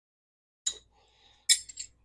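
Steel hand wrenches clinking against metal: one sharp clink just over half a second in, then a quick cluster of ringing clinks a little before the end.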